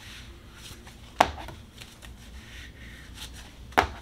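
Two cards laid down one at a time on a wooden tabletop: two sharp taps about two and a half seconds apart, with soft card rustling between them.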